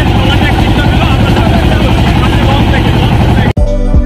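Steady low rumble of a small river boat's engine running, with voices over it. A little before the end it cuts off abruptly and music with a steady beat starts.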